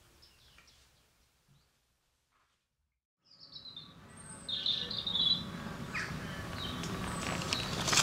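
Near silence for about two seconds, then outdoor ambience fades in: birds chirping in short high calls over a low, steady background noise that grows louder toward the end.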